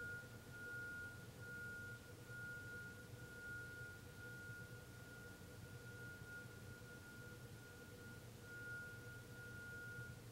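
A faint, steady, high-pitched pure tone that holds for about ten seconds, dipping briefly a few times, over a low room hum.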